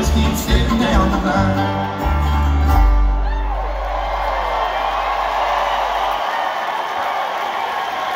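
Live bluegrass band with upright bass playing the last bars of a song and ending on a held final chord about three seconds in. The crowd then cheers and whistles, and the cheering carries on as the chord dies away.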